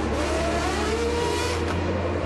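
Formula One car's V8 engine revving, its pitch rising, over a steady low drone.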